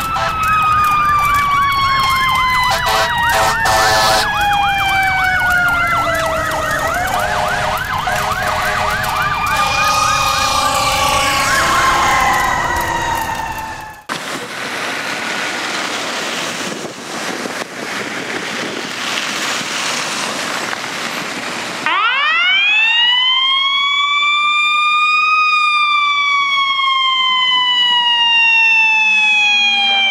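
For about the first 14 seconds, several emergency-vehicle sirens overlap, slow wails and a fast yelp sweeping up and down. After a cut there is steady outdoor street noise. About 22 seconds in, a hazmat fire truck's siren winds up quickly to a peak and settles into a slow wail, falling in pitch.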